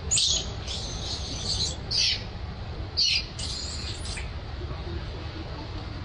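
Infant long-tailed macaque squealing in high-pitched bursts while its mother handles it: about five squeals in the first four seconds, the longest about a second, then only a low background.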